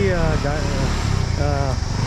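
A vehicle engine idling steadily, a low even hum, with voices talking over it.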